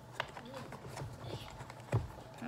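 A few faint clicks and light knocks from a milk carton and plastic shaker cup being handled on a wooden table, with one sharper knock near the end.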